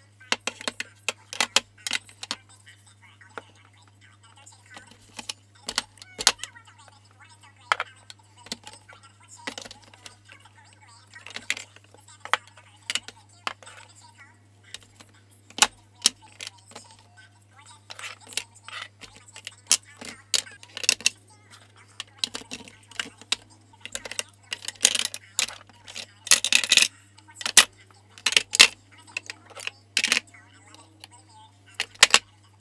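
Makeup containers (powder jars, tubes, lipsticks) clicking and clattering as they are set down into a clear acrylic organizer tray, in irregular knocks that come more often in the last third.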